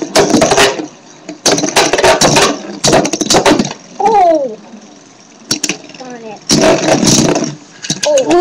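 Two Beyblade Metal Fusion spinning tops, Lightning L-Drago and Storm Pegasus, battling in a red plastic stadium, their metal wheels clacking against each other and the bowl in repeated sharp bursts. Children's excited shouts come through over the battle, including a falling call about four seconds in.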